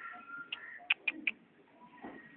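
Several short bird chirps in the background, four quick ones between about half a second and a second and a quarter in.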